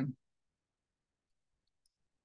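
Near silence. A woman's voice trails off in the first moment, then there is dead silence with a faint click or two near the end.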